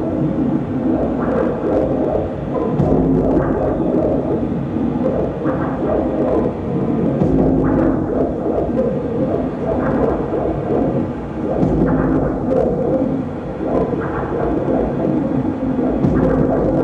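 Live electronic drone played through a mixing desk and effects: a loud, dense low rumble with shifting, droning tones, and brief brighter flares every couple of seconds.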